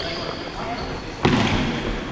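A futsal ball struck once, a sharp thud a little past halfway that echoes around the large hall.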